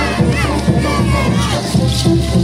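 Several high, falling shouts or whoops from a troupe of Tobas dancers, over loud band music with a steady low beat and a cheering crowd.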